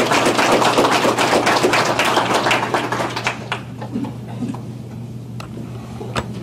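Audience applauding at the end of a lecture, a dense patter of many hands clapping that thins out and dies away about three and a half seconds in, leaving a few scattered claps.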